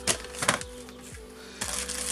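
A roll of plastic food bags set down into a disposable aluminium foil roasting tray: two sharp clattering clicks within the first half-second. Near the end a crinkly rustle of plastic packaging as a wrapped kitchen roll is picked up, all over calm background music.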